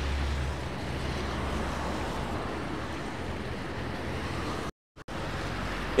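Road traffic on a rain-wet street: a steady hiss with a low vehicle rumble that fades over the first couple of seconds. The sound cuts out completely for a moment near the end.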